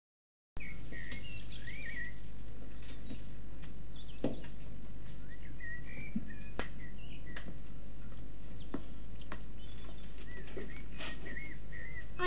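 Faint birdsong: a small bird chirping in short, wavering phrases, with a few sharp clicks, over a steady low hum and hiss.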